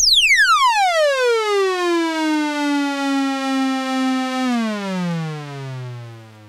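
Moog Matriarch synthesizer tone, with its pitch and volume both driven by an ADSR envelope and a little delay added. Just past the attack peak it glides steeply down in a curve as it decays, and holds a steady low note for a couple of seconds at sustain. Near the end it slides lower and fades as it releases.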